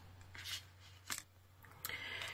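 Faint handling sounds of paper cards and plastic-sleeved metal cutting dies being moved on a tabletop, with a light click about a second in and rustling near the end.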